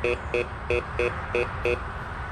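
Bounty Hunter Mach 1 metal detector sounding its low tone: six short beeps, about three a second, as an iron screw is passed over the search coil. The low tone marks a ferrous (iron) target.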